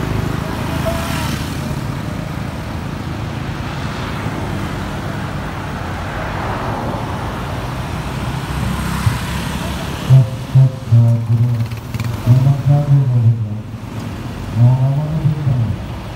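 Street traffic: vehicle engines running and a car passing close by. From about ten seconds in, loud pitched voice-like phrases break in over it, in short bursts that rise and fall in pitch.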